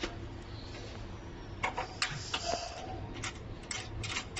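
Handling and fitting a round metal cable connector onto the ultrasonic generator's socket: a string of small irregular clicks and taps, starting about one and a half seconds in and bunching near the end, over a steady low hum.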